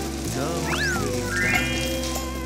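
Background music with a steady bass line, with edited-in sound effects: a quick rising whistle just under a second in, then a short rising run of chime-like tones about a second and a half in.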